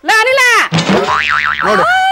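A comic 'boing'-like sound effect with a fast warbling pitch, then a woman's high, drawn-out wail starts near the end as exaggerated crying.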